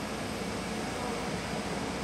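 Steady ambient noise: an even hiss with a faint low hum, like ventilation or machinery running in the background, unchanging throughout.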